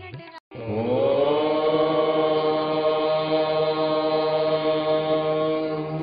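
A voice chanting one long held note, sliding up at the start and then steady over a low drone, beginning about half a second in after a brief silence.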